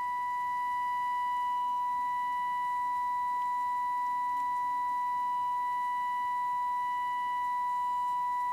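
Steady 1 kHz test tone from a Trio 9R-59D communications receiver's loudspeaker, held at an even pitch with faint higher overtones. It is the receiver demodulating a 455 kHz test signal modulated at 1 kHz, injected into its IF stages for IF alignment.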